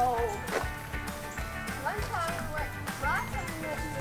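Background music with a steady beat, with a few brief voices over it.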